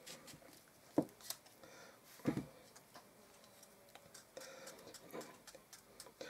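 Small kitchen knife cutting deep lengthwise slits into a fresh cucumber held in the hand: quiet, scattered crisp clicks, with two short louder sounds about one and two seconds in.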